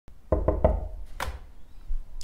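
Three quick knocks on a panelled interior door, followed about a second in by one sharper click.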